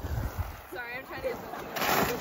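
A child belly-sliding down a wet plastic tarp slip-and-slide: a thump at the start, a sliding swish of body on wet plastic near the end, and children's high-pitched voices calling out in between.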